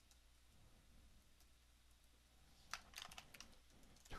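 Computer keyboard keys being typed: a quick run of about half a dozen keystrokes near the end, entering a new file name. Before it, near silence.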